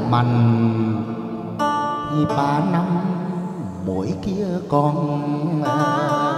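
Chầu văn ritual music: an instrumental passage led by plucked strings, with long notes that waver and bend in pitch.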